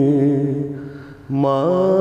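A man singing a Sufi kalam in long, held, ornamented notes. One phrase fades away about a second in, and a new phrase starts strongly just after.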